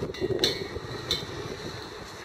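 Two light clicks from a wrench and the hose's brass fitting being handled, over a steady outdoor background noise.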